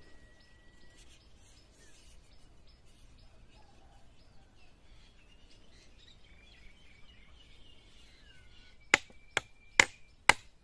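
Faint, repeated bird chirps. About nine seconds in come three sharp strikes of a long knife chopping into a green bamboo stalk resting on a wooden block.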